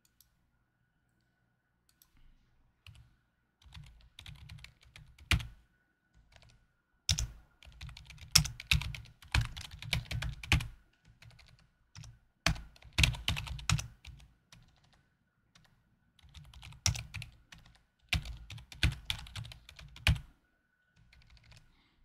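Typing on a computer keyboard: several bursts of rapid key clicks with short pauses between them.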